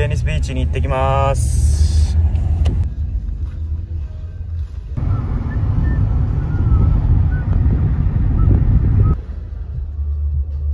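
Steady low rumble of road and engine noise inside a moving car's cabin, with a short voice-like tone about a second in.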